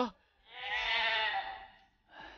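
A man's drawn-out, high, wavering cry of pain, starting about half a second in and lasting over a second.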